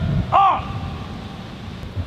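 A single loud, drawn-out shouted word about half a second in, typical of a military drill command called to a saluting formation. After it comes a low, fading rumble of wind on the microphone.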